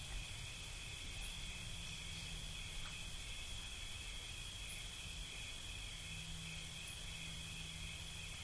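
Faint, steady chirring of crickets, held without a break, over a low steady hum.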